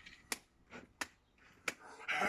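Three sharp clicks, evenly spaced about two-thirds of a second apart, in an otherwise quiet pause.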